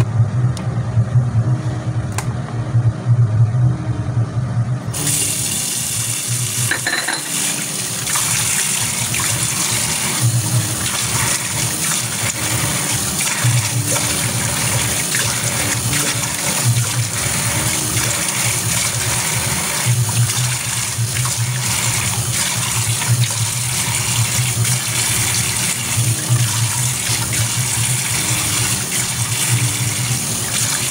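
Bathroom sink tap turned on about five seconds in and running steadily as the face is rinsed under it, over low background music with a repeating bass pattern.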